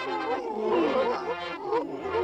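A group of cartoon seals barking in quick, overlapping calls.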